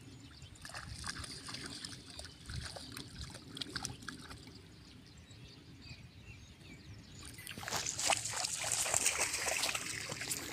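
Dogs wading through shallow floodwater, with soft scattered splashing and sloshing. A louder, steady hiss comes in about three-quarters of the way through.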